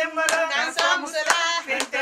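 Women singing together, unaccompanied, with hand claps keeping a steady beat of about two claps a second.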